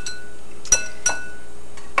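Kitchenware clinking against a ceramic mixing bowl as a wire whisk is finished with and a glass cup is picked up. There are four sharp clinks, each with a brief ring, and the two in the middle are loudest.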